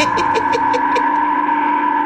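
Sustained ringing, gong-like tone from the anime's soundtrack, held steady, with a quick run of about six short pulses in the first second.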